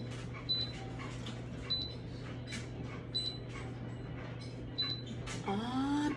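Electric pressure cooker's control panel beeping at button presses while the beef pressure-cook setting is chosen: four short, high beeps about a second or more apart, over a low steady hum.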